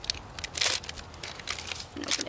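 Crinkling and crackling of a pregnancy test's wrapper being opened by hand, with the loudest crackle about half a second in.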